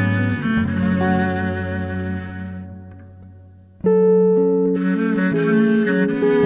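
Duo of bowed viola and fingerpicked 1964 Repiso archtop guitar playing a slow instrumental melody with reverb. The notes die away to a brief lull, then both instruments come back in together about four seconds in.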